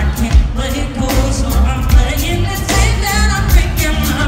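Live rock band playing: a male lead vocal over electric guitar and a drum kit keeping a steady beat.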